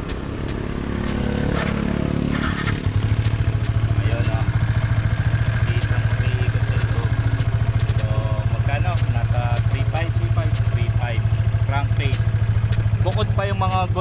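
Yamaha Sniper 150's single-cylinder four-stroke engine running: it builds over the first few seconds, then about three seconds in settles into a loud, steady idle with an even, rapid pulse.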